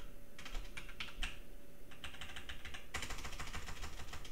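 Typing on a computer keyboard: quick runs of key clicks with short pauses between them, the densest run in the last second or so.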